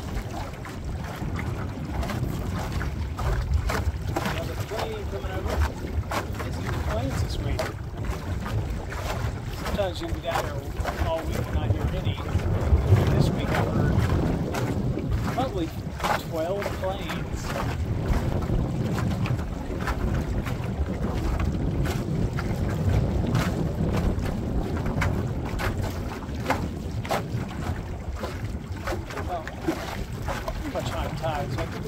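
Wind buffeting the microphone and water slapping against the hull of a small metal boat under way on choppy water, a steady low rumble broken by frequent short splashes.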